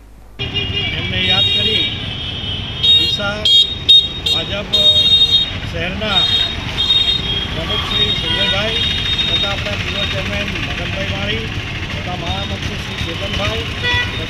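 Busy street traffic with vehicle horns honking again and again, over men's voices.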